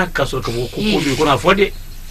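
Speech: a man talking in Malinké, with a brief hissing sound near the middle.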